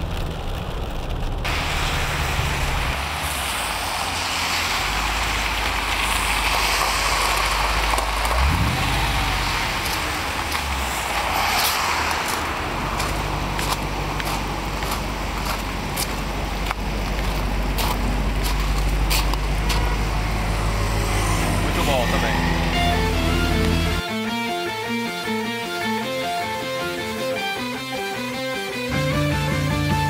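A 2010 Dodge Challenger R/T's 5.7-litre V8 running with a steady low drone under a wash of road and rain noise, with a brief rise in engine pitch about eight seconds in. Rock music takes over for the last few seconds.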